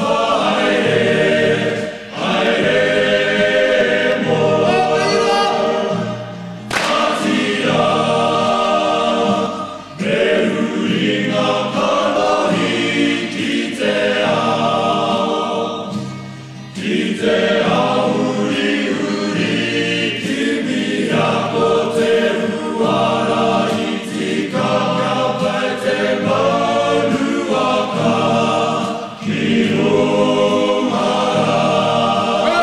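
A Māori college choir singing a Māori-language song at full voice. It sings in long phrases, with short breaks about every four to six seconds.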